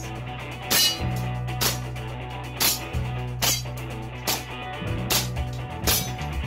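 A gas blowback airsoft pistol firing single shots, about seven sharp cracks roughly one a second, over background music.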